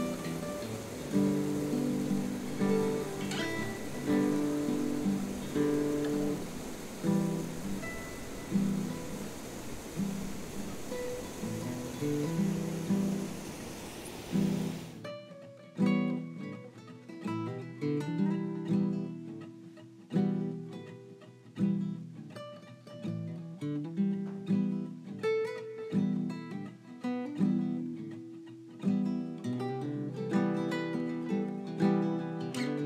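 Strummed and plucked acoustic guitar background music with a steady beat. Under the first half runs the steady rush of a small waterfall, which cuts off about halfway, leaving the guitar alone.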